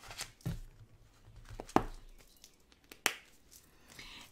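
Handling of sticker sheets in a sticker-storage album with plastic sleeves: soft crinkling and peeling, with three sharp clicks, the loudest a little under two seconds in.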